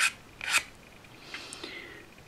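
Flat hand file drawn across the end of a small model bridge girder plate to square the face off: two quick rasping strokes about half a second apart, then a softer, longer stroke in the second half.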